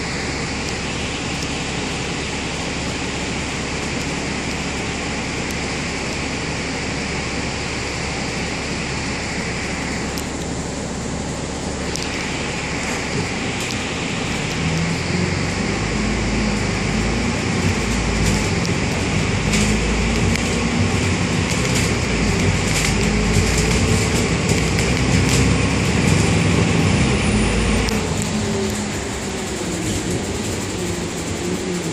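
Interior of a double-decker bus heard from the upper deck: a steady air-conditioning and engine hum while it stands, then the diesel engine note rising in steps and getting louder as the bus pulls away about halfway through, easing off near the end.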